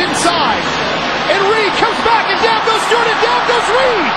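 A man's excited voice, in rising-and-falling bursts, over steady loud background noise.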